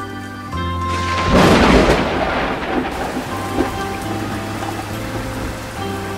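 Thunderstorm sound effect: a loud thunderclap about a second in, then steady rain, over light background music.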